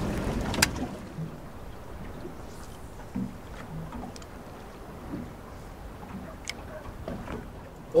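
Wind and choppy water around a small fishing boat, louder for the first second, with one sharp click about half a second in and a few faint ticks after.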